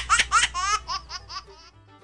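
High-pitched laughter, a fast run of short rising "ha" pulses about six a second that grows fainter and dies away after about a second and a half.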